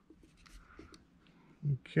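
Faint light clicks and rustles of hands handling pistols over a table. A brief low vocal hum comes near the end.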